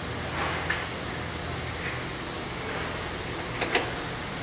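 Workshop background with a steady low hum, a faint tap about a second in, and two sharp clicks close together near the end.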